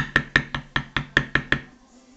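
A leather-tooling stamp struck rapidly with a mallet or hammer, about nine sharp, even taps at roughly five a second, stopping about a second and a half in.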